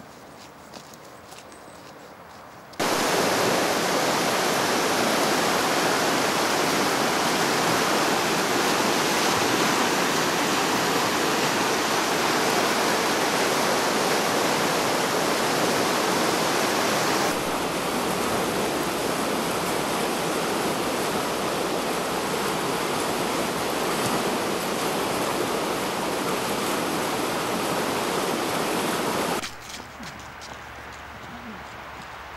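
Rushing stream running over rocks: a loud, steady rush of water that starts abruptly a few seconds in, changes tone about seventeen seconds in and stops suddenly near the end.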